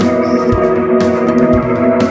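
Downtempo pop-rock song, instrumental here: a sustained chord over a steady beat of low drum thumps, about two a second, with light cymbal ticks.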